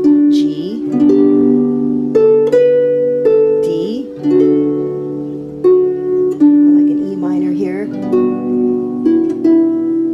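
Harp plucked in D major chords, the notes ringing on between plucks. A little girl's voice joins in briefly about half a second in, near four seconds, and again around seven to eight seconds.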